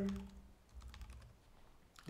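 Typing on a computer keyboard: a run of light, quick key clicks.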